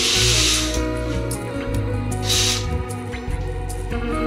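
Fabric curtains being drawn shut, two soft swishes: one at the start and one a little over two seconds in. Background music with a gentle song plays throughout.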